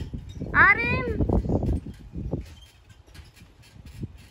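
A toddler's short, high-pitched squeal that rises and then falls, about half a second in, followed by softer voice sounds over low thuds from bouncing on the trampoline.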